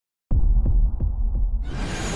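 Intro-animation sound design: a deep, heartbeat-like low rumble that starts a moment in, pulsing about three times a second, then a rising whoosh sweeping in near the end.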